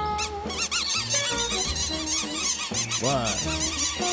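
A flock of small cartoon birds squawking and chattering all at once, a dense flurry of short chirps that rise and fall in pitch, over background music. A little after three seconds a lower series of swooping calls joins in.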